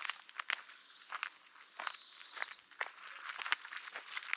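Footsteps of a person walking along a dirt trail strewn with stones, dry leaves and twigs, about two short, sharp steps a second.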